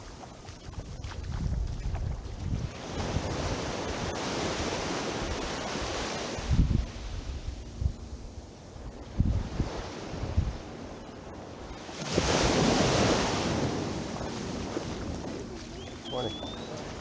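Small ocean waves breaking and washing up the sand at the water's edge, surging about two seconds in and again at about twelve seconds. Wind gusts buffet the microphone in between.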